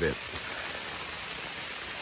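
Rain and snow falling on the tent fabric, heard from inside the tent as a steady hiss.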